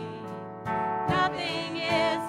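Live contemporary worship song: singers with a band. The voices ease off at the start and come back in strongly about two-thirds of a second in.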